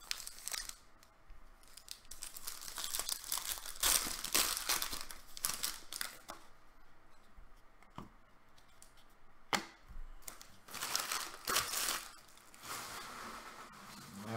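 Gold foil wrappers of 2016-17 Panini Black Gold soccer card packs being torn open and crinkled in several bursts, with a couple of light knocks as cards and packs are set on the table.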